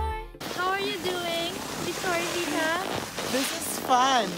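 A person's voice letting out drawn-out wordless exclamations, pitch sliding up and down, while balancing on a snowboard; background music cuts off in the first half-second.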